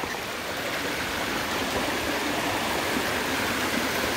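Small rocky creek running, a steady rush of water.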